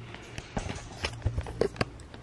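A few light knocks and handling sounds in quick succession, several spaced irregularly through the second half.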